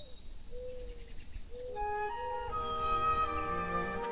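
A few high bird chirps over a low rumble, then a soft flute melody that comes in about two seconds in and builds to several held notes.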